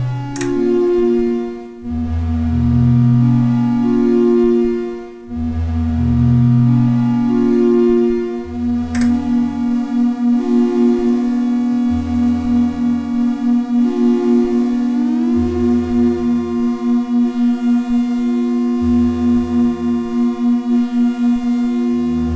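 Lyra-8 organismic synthesizer drone with delay, its voices switched on and off in a repeating loop by an Ornament-8 sequencer, so the lower notes change every two to three seconds over a steady held tone. From about halfway the sound pulses at two or three beats a second, and some tones glide upward about two-thirds of the way in.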